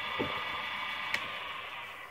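Wood lathe running with a steady hum, spinning a turned goblet blank, with a single sharp click about a second in; the sound fades near the end.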